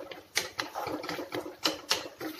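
A spoon scraping and knocking against a metal pan while a thick beef masala is stirred, with irregular quick clicks and a few sharper knocks, one about a third of a second in and two near the end.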